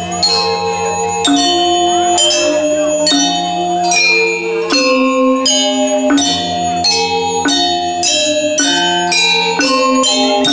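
Balinese gamelan angklung ensemble playing a kebyar-style piece. Bronze metallophones and pot gongs strike quick, ringing interlocking notes over long-held low tones, with the hand-played two-headed drums among them.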